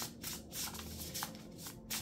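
Oracle card deck being shuffled by hand: a quick series of short papery rustles as the cards slide over one another.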